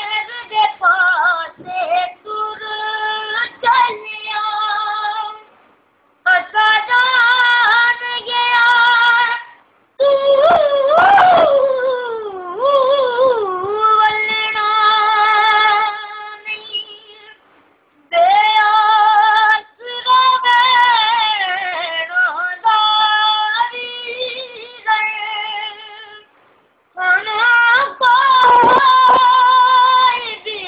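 A boy singing unaccompanied in a high voice, holding long notes with wavering ornaments, in phrases broken by short pauses.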